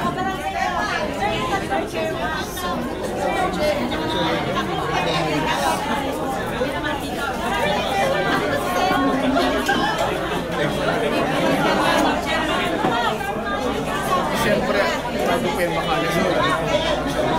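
Indistinct chatter of many people talking at once, a steady babble of overlapping voices.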